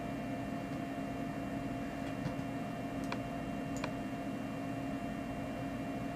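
Steady room hum with a few steady tones in it, and three faint clicks about two, three and four seconds in.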